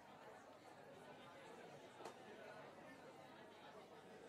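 Faint chatter of many people talking among themselves in a large hall, with one sharp click about two seconds in.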